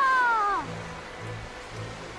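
A seagull's cry, one long call falling in pitch and ending about half a second in, over soft background music.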